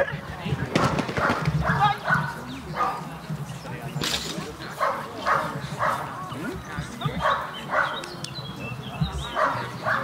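A dog barking in short repeated barks, about one to two a second, while running an agility course, mixed with a handler's short called commands.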